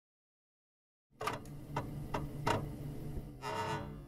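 Intro music sting: after about a second of silence, a steady low tone with a sharp tick about every 0.4 s, then a brief swell near the end.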